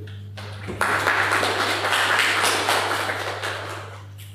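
Audience applauding, starting about a second in and fading out near the end, over a steady low hum.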